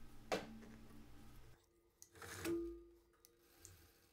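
Quiet workshop room tone with a single sharp click about a third of a second in and a brief faint tone about two and a half seconds in.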